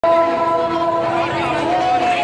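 A loud horn note held at one steady pitch with overtones for about a second and a half, then bending in pitch near the end, over crowd noise.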